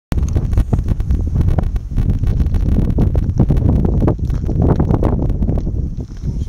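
Wind buffeting the camera microphone: a loud, rough, gusting rumble with crackling.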